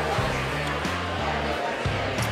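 Background music with guitar and a steady bass line whose notes change a few times.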